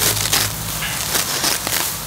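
Tall grass being grabbed, pulled and torn by hand: a crunchy rustling of stalks with scattered small snaps.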